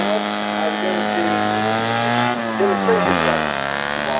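Engine of a cut-down Citroën 2CV special accelerating away from a standing start. Its note climbs steadily, dips a little over two seconds in, then climbs again.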